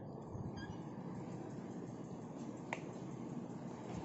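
Low steady room noise with one short, sharp click a little under three seconds in.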